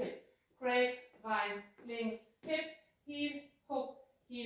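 Only speech: a woman's voice calling out short words in an even rhythm, about two a second, like dance-step calls.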